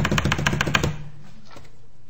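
A quick drum roll: a run of rapid, even strikes, about twelve a second, that stops about a second in.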